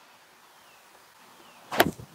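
A short, sharp swish near the end as a lightweight disc golf disc is ripped out of a backhand throw at release, over faint outdoor background.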